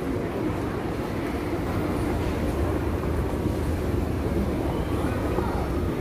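Shopping-mall background noise at an escalator: a steady low rumble with a faint murmur of voices.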